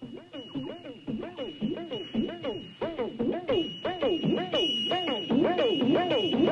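Eerie trailer sound effect: a wavering tone that swoops up and down about twice a second, growing louder, over a thin steady high whine.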